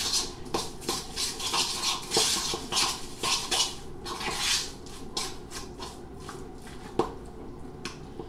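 A utensil stirring a wet tuna, egg and breadcrumb patty mixture in a bowl, with irregular scraping and mushing strokes against the bowl several times a second. The stirring grows sparser about halfway through, and a single sharp click of the utensil on the bowl comes near the end.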